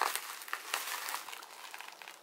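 Plastic bubble wrap crinkling and crackling as it is handled and pulled off a package by hand, with many small quick crackles.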